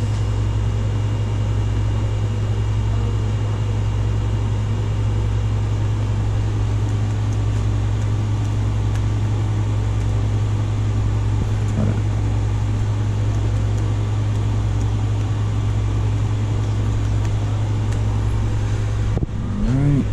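A steady, loud low hum with a faint hiss above it, unchanging throughout, like room machinery running.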